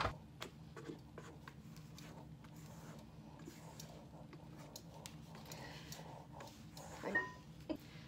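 Faint handling sounds as stiff whipped egg whites are scraped out of a stainless steel mixing bowl: a few soft knocks in the first second, then quiet over a low steady hum. A short clink with a brief ring comes about seven seconds in.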